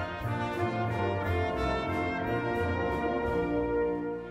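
Orchestral TV western theme music: a brass section playing over a steady low beat, with light percussion strikes about three times a second.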